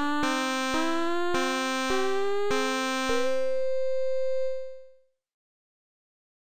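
Padshop 2 granular synthesizer sounding two held notes. The lower note stays steady while the upper one glides upward in steps over about three seconds as the grain Duration Key Follow setting is swept, with a click about every half second. The tone then fades out about four and a half seconds in.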